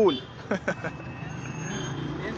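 Outdoor street noise of road traffic: a steady hum of passing vehicles, with a few brief voice fragments in the first second.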